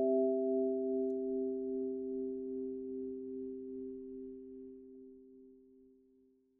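Background music ending on a held, bell-like chord of a few steady notes that slowly fades away.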